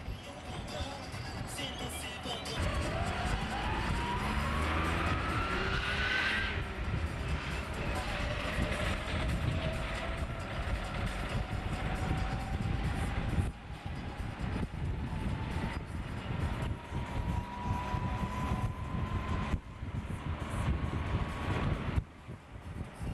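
Engine and drivetrain of a moving vehicle over road rumble. A whine rises steadily in pitch as it accelerates, then drops about six seconds in as at a gear change, and climbs slowly again for the rest of the time.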